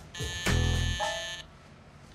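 Background music: a held chord with a strong bass note comes in about half a second in and fades after about a second and a half.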